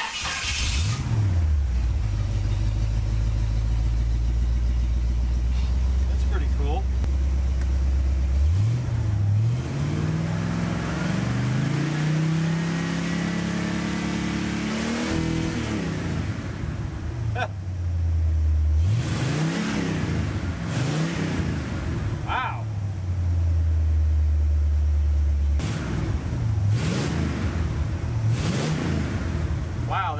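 1970 Pontiac GTO V8 idling, then revved in one long steady climb to nearly 4,000 rpm and let fall back to idle. This is followed by several quick throttle blips, testing the new programmable distributor's timing advance curve, with a good throttle response.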